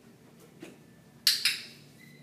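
Dog-training clicker pressed once, giving a sharp two-part click-clack. This is the marker sound that tells the dog it has done the right thing while it is being shaped onto a platform.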